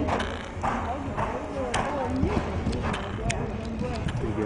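Horse's hooves striking the arena footing in a steady rhythm, about two beats a second, with people's voices behind.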